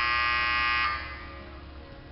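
An electronic buzzer sounds once, a steady buzz that cuts off suddenly just under a second in.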